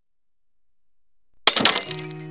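Glass-shattering sound effect: a faint rising swell, then a sudden loud crash of breaking glass about one and a half seconds in, ringing briefly.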